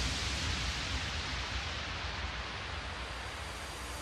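White-noise sweep in a big room house mix: a wash of hiss, with no beat or melody, slowly fading, its brightness dipping in the middle and opening up again near the end.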